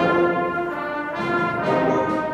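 Intermediate-school concert band, brass to the fore with woodwinds, playing a passage of held chords that change about every half second.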